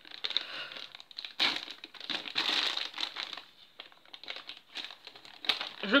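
Thin clear plastic bag crinkling in irregular bursts as the wrapped parts of a PVC figure are handled and unwrapped, busiest a little over a second in.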